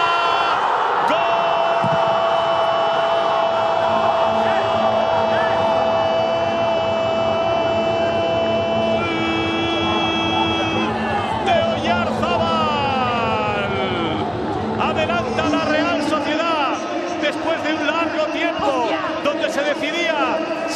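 Television commentator's goal call after a converted penalty: one long 'gol' held on a single pitch for about eight seconds. It is followed by a shorter, lower held shout and falling cries, then excited shouting near the end.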